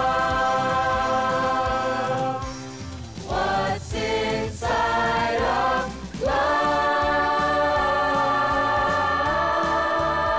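Show choir singing in harmony: a few short sung phrases, then a long chord held from about six seconds in.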